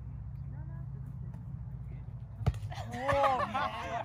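A volleyball hit hard about two and a half seconds in, followed a moment later by a softer thud, then players shouting and exclaiming. A steady low rumble runs underneath.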